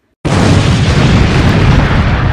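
A loud explosion sound effect that cuts in suddenly about a quarter of a second in and carries on as a continuous heavy rumble, strongest in the low end.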